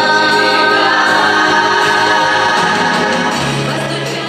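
Music with a choir singing long held notes.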